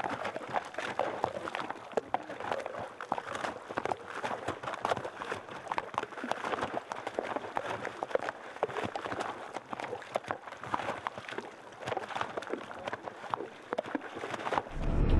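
Horses wading across a shallow, icy creek: many quick, irregular splashes and hoof knocks on the stony bed.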